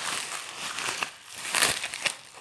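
Plastic bubble wrap crinkling as a phone is handled and unwrapped from it, loudest about a second and a half in.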